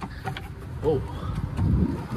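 EZGO TXT electric golf cart pulling away on its 48-volt lithium battery, the rumble of the drive and tyres on pavement building up over the last half second as it speeds up.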